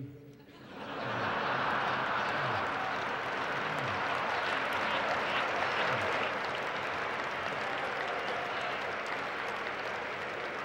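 Large banquet audience applauding and laughing at a punchline. The sound swells about half a second in and carries on steadily as a dense clapping roar.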